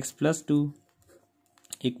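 Pen writing on notebook paper: faint scratching strokes in a short gap between spoken words.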